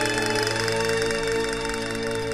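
Baroque chamber orchestra holding sustained chords, with a rapid, continuous castanet roll running over them.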